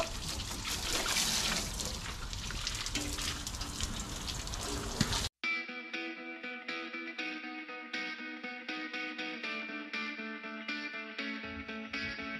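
Water spraying from a garden hose into a car's engine bay, a steady rushing hiss that cuts off suddenly about five seconds in. Background music with steady, evenly paced notes follows.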